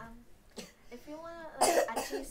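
A young person's voice speaking faintly, then a short, loud cough near the end.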